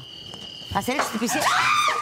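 A high-pitched shriek, rising and falling, in the second half, among several people's voices. Before that, a steady trill of crickets is heard until it stops about a second in.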